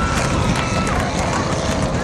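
Grandstand crowd cheering, with one long held whoop, over the steady rumble of race car engines on the dirt track.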